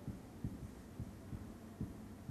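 Faint, irregular dull knocks of a marker pen tapping and stroking against a whiteboard while writing, about six in two seconds.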